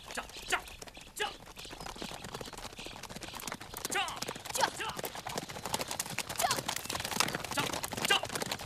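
Hooves of several horses galloping on a dirt trail: a fast, dense clatter that grows louder as they come closer. A few short cries rise over the hoofbeats.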